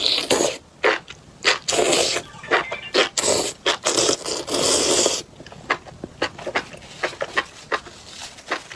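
Loud wet slurping and sucking of chili-oil-soaked enoki mushrooms in several noisy bursts over the first five seconds, followed by quieter chewing and lip-smacking clicks.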